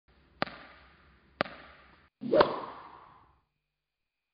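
Three sharp clicks about a second apart, each fading out quickly; the third is the loudest.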